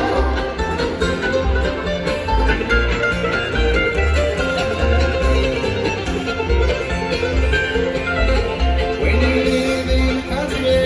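Live bluegrass band playing an instrumental break with no singing: banjo, acoustic guitar, fiddle and mandolin over an upright bass pulsing in a steady beat.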